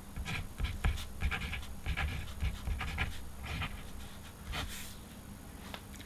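Tip of an Edding white paint marker writing on black paper: a run of short, quick strokes as a word is lettered, easing off near the end.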